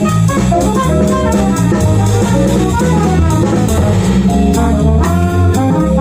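Live jazz band playing: trumpet and saxophone play a melodic line over electric bass, electric keyboard and drum kit with cymbals.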